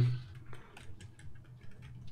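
A scattering of faint, irregular clicks, a few a second, over a low steady hum.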